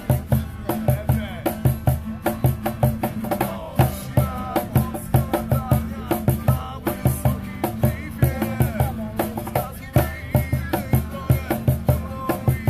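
Live acoustic band: a cajón beats out a steady rhythm of deep thumps and sharp slaps under several strummed acoustic guitars, and a male voice comes in singing about three and a half seconds in.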